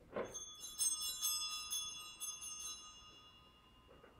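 Sanctus bells on the altar, a cluster of small bells shaken in a quick run of strokes for about two and a half seconds. Several pitches ring together and die away near the end. They mark the consecration in the eucharistic prayer.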